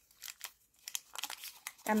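Foil wrapper of a Kinder Chocolate bar crinkling in scattered crackles as it is pulled open by hand.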